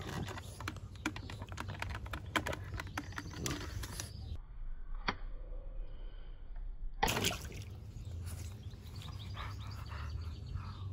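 A French bulldog chewing and mouthing a wet rubber fish toy: a run of wet clicks and crackles, broken by a quieter stretch a little before the middle with one sharp click, then rough noise again.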